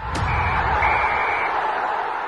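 Loud, steady, noisy outro sound effect, with a click just after it begins and two brief high tones in the first second and a half.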